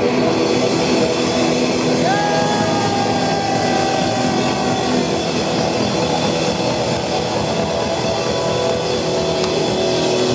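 Heavy metal band playing live: distorted electric guitars, bass and drums at full volume. About two seconds in, a high note slides up and is held for about three seconds over the band.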